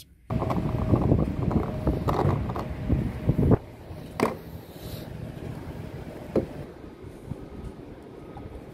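Loud rustling and knocking as the phone is handled while getting out of a car. After about three and a half seconds this gives way to a quieter steady outdoor hiss, broken by a few sharp clicks and taps.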